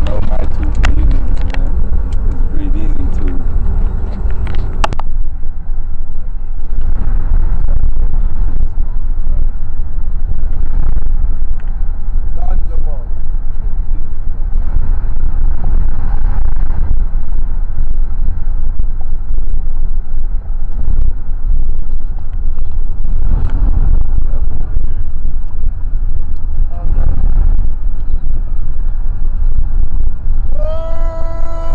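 Car cabin noise from inside a moving car: a steady, loud low rumble of road and engine noise, with indistinct voices now and then.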